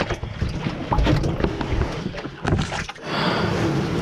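Water splashing and sloshing in a plastic tub around a plastic basket, with irregular knocks and bumps from handling close to the microphone.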